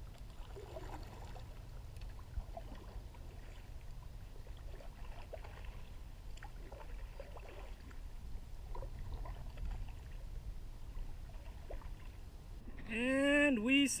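Wilderness Systems Tarpon 140 sit-on-top kayak being paddled: faint, irregular paddle splashes and light knocks over a low steady rumble. A voice comes in loudly near the end.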